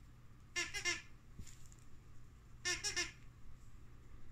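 Squeaker in a plush dog toy squeezed twice, about two seconds apart, each squeeze giving a short burst of two or three high squeaks.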